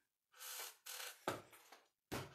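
A strip of paper being handled and slid against cardstock as it is turned over and lined up: two short spells of soft rustling, with a light tap a little past halfway.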